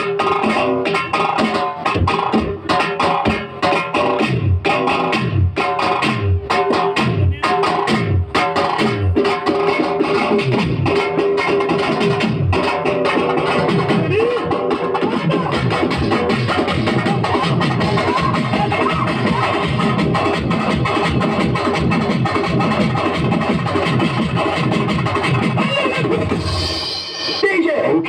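Live folk dance music with fast drum beats and keyboard, the low drum strokes dropping in pitch several times a second. The music stops about a second before the end.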